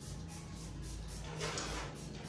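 Quiet room with a faint low hum, and a soft rustle of objects being handled on a shelf about one and a half seconds in.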